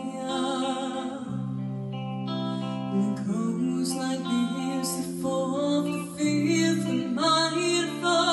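A girl singing solo into a handheld microphone over an instrumental accompaniment, holding long notes.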